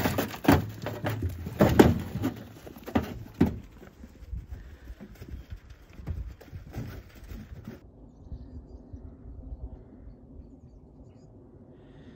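Lambs feeding at a metal trough: a quick run of sharp knocks and clatters against the trough in the first few seconds, then fainter knocking. Near the end it is much quieter, with only a faint low rumble left.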